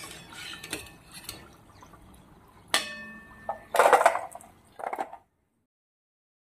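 Modaks frying in ghee sizzle softly while a steel slotted spoon scoops them out, with small clinks. A ringing steel clink comes a little before three seconds in, then a louder clatter at about four seconds and a smaller one near five. The sound stops abruptly after about five seconds.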